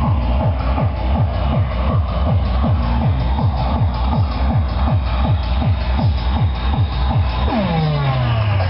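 Fast tekno dance music driven by a pounding kick drum, about three beats a second. Near the end a long falling pitch sweep slides down into the bass.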